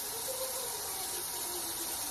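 Water running steadily from a kitchen tap into the sink, filling dirty pans to soak.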